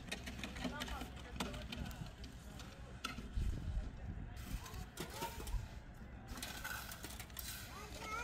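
Faint voices talking, over intermittent knocks and scrapes as concrete blocks are set into mortar. A longer scraping sound comes near the end.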